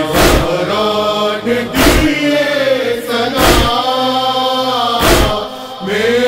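Noha chanting held on long notes, with a deep chest-beating thud (matam) about every one and a half seconds, four times.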